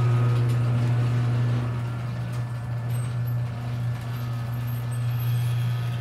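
A motor running with a steady low mechanical hum, a little louder for the first two seconds and then holding level.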